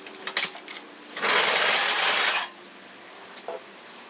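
Steel engine-hoist chain clinking, then a loud rattle lasting just over a second as the chain is pulled about, followed by a few faint clicks.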